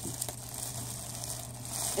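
Faint crinkling and rustling of plastic packaging wrap being handled, with a few soft clicks near the start.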